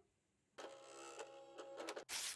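Near silence, then about half a second in a desktop printer starts printing a page: a steady whir with held tones and rapid fine clicking.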